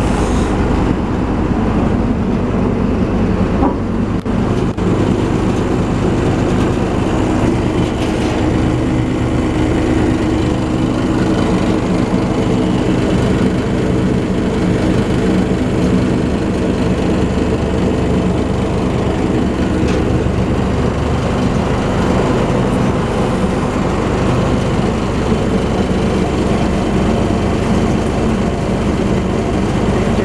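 Hanta MS-40BIT truck-mounted anti-freeze spreader running on its Hino truck, with the conveyor drum and its drive chains turning: a steady, even mechanical drone of diesel engine and spreader drive.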